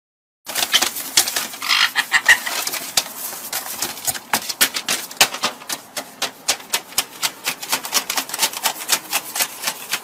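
Caique parrot hopping on newspaper: rapid, uneven taps and rustles of its feet on the paper, about five or six a second, starting after a short silence, with a short high call about two seconds in.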